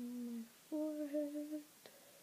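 A woman humming two held notes, the second higher and slightly wavering, followed by a faint click near the end.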